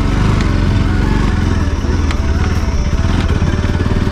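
Bajaj Pulsar NS200's single-cylinder engine running steadily as the motorcycle rides along, a low, fast-pulsing engine note.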